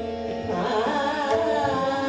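Hindustani classical khayal in Raag Bhairav: a woman's voice sings an ornamented, gliding melodic line that enters about half a second in. It is accompanied by sustained harmonium notes and occasional tabla strokes.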